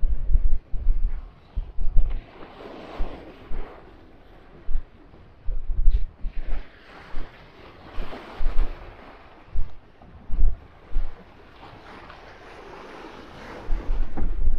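Wind gusting on the microphone in repeated low rumbles, over rough sea washing and breaking around a small boat, the wash swelling and fading every few seconds.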